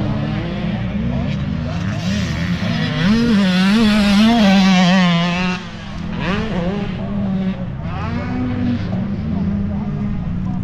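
Motocross dirt bike engines revving on the track, the pitch rising and falling with the throttle. The loudest bike builds from about three seconds in and drops away sharply at about five and a half seconds, with other bikes still running underneath.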